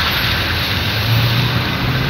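Steady noise inside a stationary car: a low engine hum under an even hiss.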